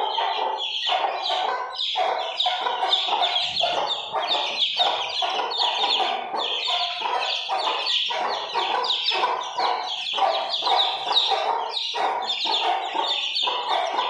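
A cage full of Aseel chicks peeping nonstop, many short high calls overlapping in a constant chorus.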